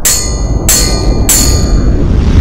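Intro sound effect: three sharp bell-like metallic strikes about two-thirds of a second apart, each ringing briefly, over a loud low rumble.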